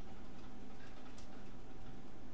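Steady background hum with a faint click about a second in.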